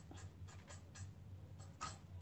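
Faint, irregular short clicks, about seven, the loudest near the end, over a low steady hum.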